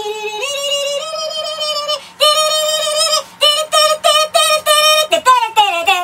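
A high-pitched wordless singing voice holds long notes, then breaks into a quick run of short separate notes, and ends in a falling slide.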